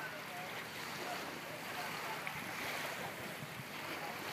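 Steady wind noise on the microphone, an even rushing haze with no distinct events.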